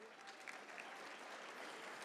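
Audience applauding, faint, building over the first half second and then holding steady.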